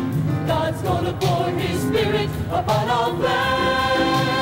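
Mixed choir of men and women singing a gospel anthem, moving through short phrases and then holding a full chord with vibrato from about three seconds in.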